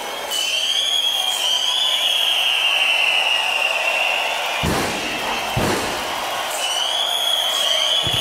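Hard-dance live set over a festival sound system in a filtered break: a sustained, slightly wavering high tone over dense crowd and background noise, with the bass cut away. Two heavy booms come a little under a second apart just past the middle.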